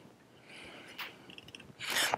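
A man's soft breathing, two breaths about half a second apart, with a light click about a second in.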